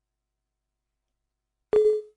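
A single short computer alert beep, one steady tone lasting about a third of a second near the end, sounding as a program's dialog box pops up on screen.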